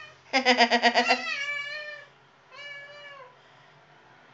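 House cat meowing twice while held on its back and handled: first a long, loud meow with a quick quaver that falls away at the end, then a shorter, quieter one. The meows are protests at being held belly-up.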